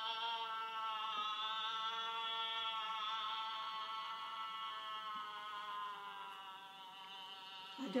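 Chamber opera music playing through an iPad's built-in speaker: one long held chord that starts suddenly and slowly fades over about eight seconds.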